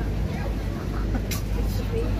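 Indistinct chatter of a crowd walking through a street market, over a steady low rumble, with one short sharp click just past halfway.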